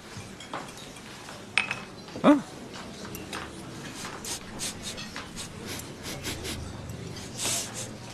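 A person sniffing at food, a string of short sniffs through the second half.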